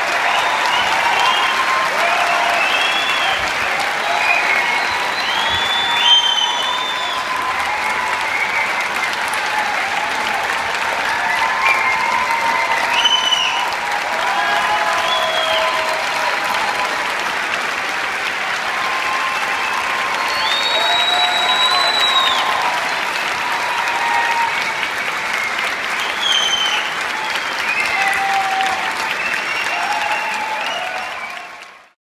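Concert audience applauding steadily, with scattered cheers and calls from individual listeners rising above the clapping.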